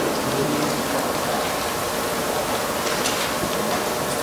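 Steady, even hiss of background noise in a large meeting hall, with a faint murmur from the seated crowd.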